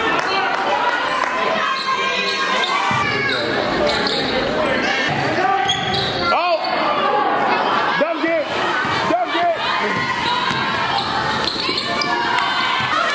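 Basketball game play on a hardwood gym floor: the ball bouncing and sneakers squeaking in short chirps, with voices of players and spectators carrying in the echoing hall.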